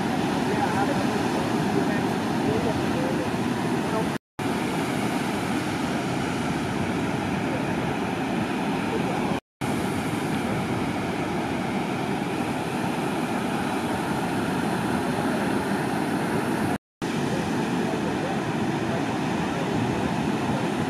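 Steady rushing noise of ocean surf, broken by three brief dropouts where the footage cuts, about four, nine and seventeen seconds in.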